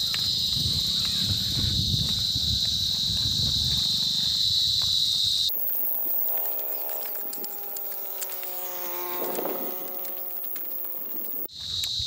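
A steady, high-pitched insect chorus with a low rumble beneath it, cut off abruptly about halfway through. The rest is quieter, with a faint drawn-out call of several steady tones whose source is unclear.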